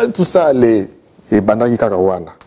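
Speech only: a man talking, with a short pause about a second in.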